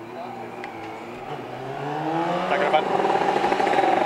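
A racing motorcycle engine running, growing louder and rising slightly in pitch over the second half.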